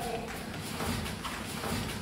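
Footsteps on a hard stairwell floor and a cardboard parcel being set down by a door: a few light, irregular knocks and scuffs over a faint hum.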